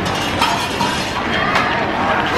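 A wide plastic straw stabbed through the sealed film lid of a plastic bubble-tea cup, with clicks and crinkles of the cup being handled; two sharp clicks, one near the start and a louder one about a second and a half in.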